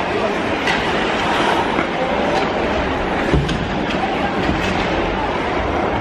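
Ice hockey arena ambience: a steady murmur of the crowd with skates on the ice, and now and then a sharp click of a stick or puck.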